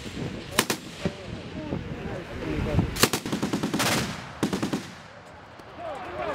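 Belt-fed machine gun firing: a few sharp shots in the first second, more around three seconds in, and a rapid burst near four seconds.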